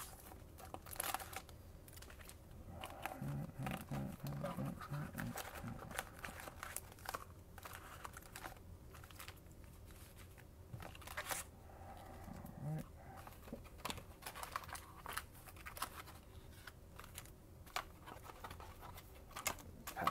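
Foil trading-card packs crinkling and rustling against a cardboard box as they are handled and lifted out, in scattered short bursts.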